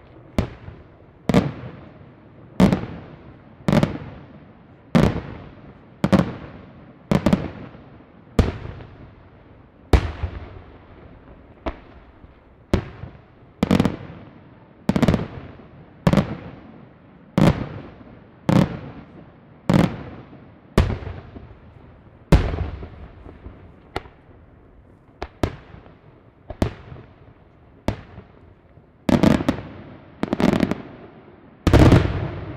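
Aerial firework shells bursting one after another, about one sharp bang a second, each dying away quickly. Near the end the bangs come in a fast cluster.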